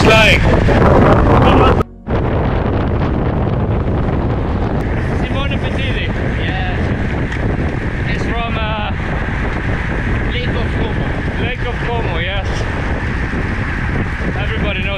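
Wind rushing over the camera microphone of a moving road bike, a loud steady buffeting that masks most other sound. It cuts out briefly about two seconds in, and short snatches of voices come through it several times.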